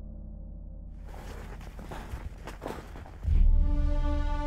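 Background music with low sustained notes. From about a second in, crunching footsteps in snow are heard. Near the end, a louder music passage comes in with deep, held notes.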